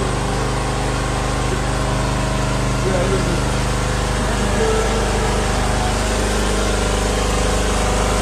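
A steady engine hum running at an even level, with faint voices of people nearby over it.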